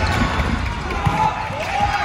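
Futsal ball kicked and knocking on a wooden sports-hall court, with a sharp knock about a second in. Voices call out over the hall's reverberant hubbub.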